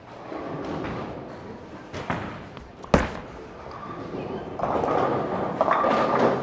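A Storm Night Road bowling ball, drilled pin down, is released onto the lane with one heavy thud about three seconds in. It rolls away, and near the end the pins crash and clatter.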